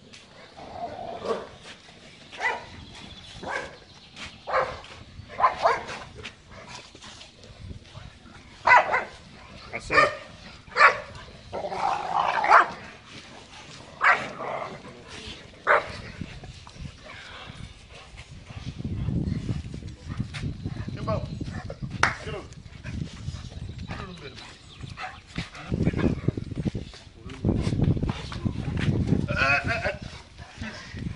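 Dogs barking: a series of short, loud barks, about one every second or two, through the first half. From the middle on, a low rumbling noise comes and goes.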